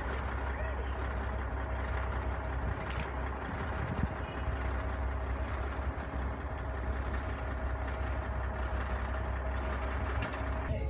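Semi-truck's diesel engine running as the rig rolls slowly past, a steady low rumble with a faint steady whine above it.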